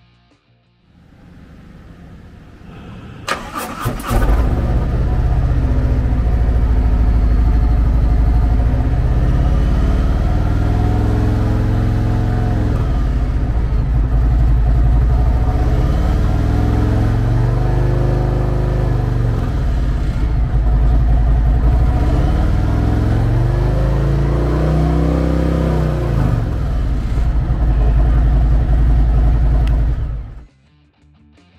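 2019 Harley-Davidson Street Glide Special's Milwaukee-Eight 114 V-twin, fitted with slip-on mufflers, being started: the starter cranks briefly about three seconds in and the engine catches at once. It then idles and is revved several times, each rev rising and falling back to idle.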